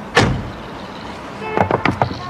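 One loud slam about a quarter of a second in, then a quick run of three or four sharp knocks with a brief ringing tone just before the end.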